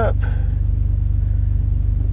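Chevy Colorado pickup's engine idling with the truck put in reverse: a steady low rumble with a fast, even pulse, heard inside the cab.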